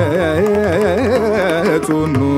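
Male Carnatic vocalist singing a phrase full of oscillating pitch ornaments (gamakas) over a steady low drone, with violin and mridangam accompaniment. Near the end the line settles onto a lower held note.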